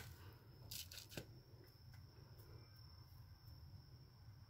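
Near silence: room tone with a low steady hum and a faint high whine, broken by a couple of brief faint rustles about a second in.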